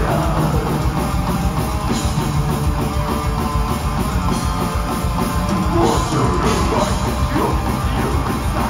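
Live blackened thrash metal band playing at full volume: distorted electric guitars, bass and a drum kit, heard from within the audience.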